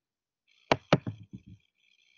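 Two sharp clicks about a quarter second apart, followed by several softer knocks, over a faint steady hiss.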